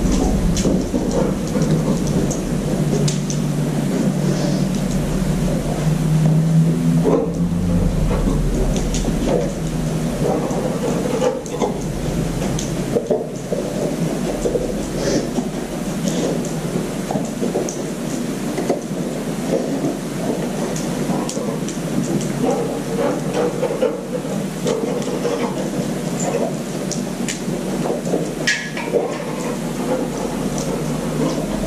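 A steady low rumble and hum of room noise, with faint scattered clicks.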